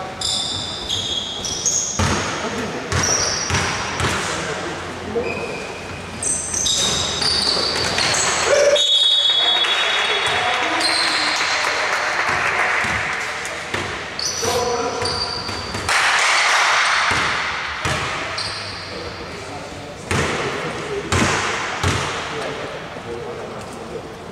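Basketball bouncing on a gym floor, with sneakers squeaking and players' voices echoing in a large sports hall during live play.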